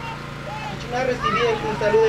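A voice speaking over a steady low hum.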